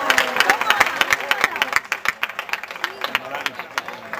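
A small crowd clapping, the separate claps distinct and fast at first, then thinning and fading after about two seconds, with a few voices calling out.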